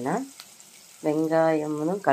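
A woman's narrating voice, trailing off at the start, then after a short pause one word drawn out in a long steady held vowel; a faint sizzle of onions frying in oil in the pan underneath.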